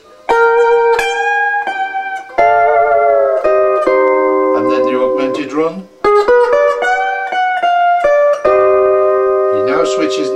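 Twin-neck Fender Stringmaster lap steel guitar played with a steel bar in B11 tuning: sustained chords and melody notes, with new phrases starting about two and a half, six and eight and a half seconds in, and notes sliding in pitch, with a glissando near the end.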